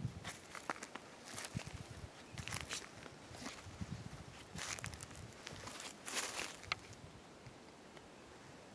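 Footsteps crunching through dry, burnt leaf litter and twigs, in a few irregular bursts of crackling with soft thuds underneath.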